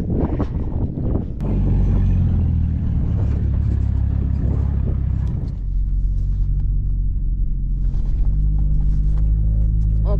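A vehicle engine running, heard from inside the cab as a steady low rumble. It starts after a second or so of clatter, and its note shifts about halfway through.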